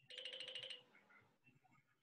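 A brief, faint electronic alert tone, trilling rapidly, lasting under a second.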